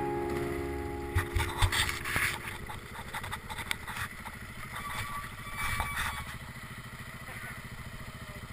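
Guitar music fading out in the first couple of seconds, giving way to a KTM 690 Enduro's single-cylinder engine running slowly with an even low pulse. Clatters and knocks come from the bike rolling over a rough, stony track, mostly in the first few seconds.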